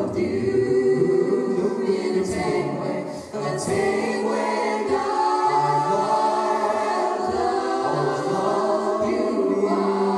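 Mixed male and female vocal ensemble singing in close harmony a cappella, amplified through stage microphones, with a short break in the sound a little over three seconds in.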